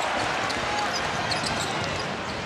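A basketball dribbled on a hardwood court under the steady noise of an arena crowd.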